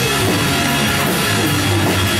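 Live heavy rock band playing loud and without a break: electric guitar, bass and a drum kit with cymbals.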